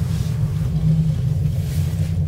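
Steady low rumble inside a moving gondola cabin riding along its cable.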